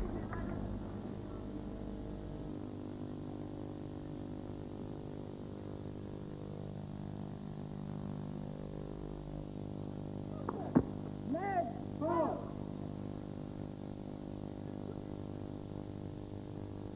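Quiet tennis-stadium ambience between points over a steady hum. About eleven seconds in there is a single sharp knock, followed by two short rising-and-falling shouts.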